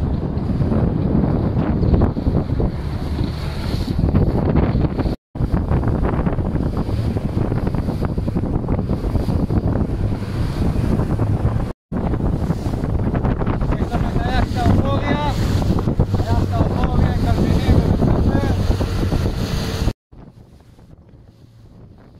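Strong wind buffeting the microphone over the rush of sea water past a rigid inflatable boat under way on open sea, cutting out abruptly twice. Faint voices call out about halfway through, and the noise drops much lower for the last two seconds.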